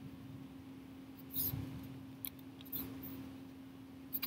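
Computer mouse clicking: a few short, sharp clicks spread over the second half, the first the loudest, over a steady low hum.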